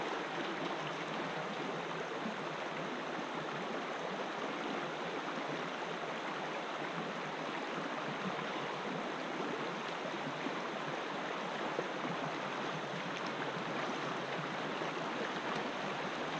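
Shallow, clear river flowing over a stony bed: a steady rush of water.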